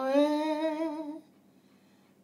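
Solo female voice holding a wordless note with a slight vibrato. The note steps up a little in pitch just after the start and stops about a second in, leaving near silence.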